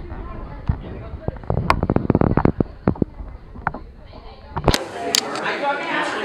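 A burst of rapid, irregular knocks and thumps, heavy in the low end, about one and a half to nearly three seconds in. A sharp crack follows near five seconds, then a voice.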